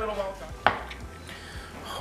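Knife slicing a cooked ribeye steak on a cutting board, with one sharp tap of the blade against the board a little over half a second in.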